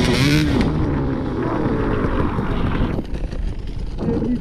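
Enduro dirt bike engine revving hard and unevenly under load on a steep uphill climb, with a rush of noise in the first half second; the engine sound drops away about three seconds in.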